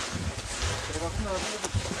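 Wind buffeting the handheld camera's microphone in low, uneven gusts, with a faint voice about a second in.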